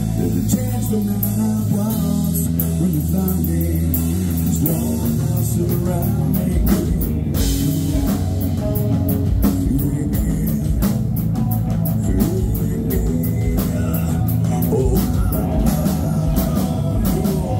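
Live hard rock band playing: distorted electric guitar, bass, drum kit and male lead vocals through a loud PA. The drums hit harder about halfway through.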